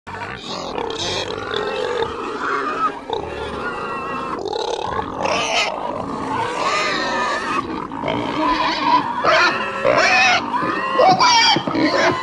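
A group of pigs grunting and squealing, many calls overlapping.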